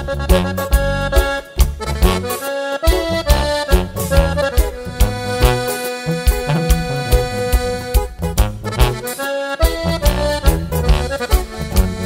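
Instrumental break in a regional Mexican song: an accordion plays the melody over a bass line and a steady drum beat.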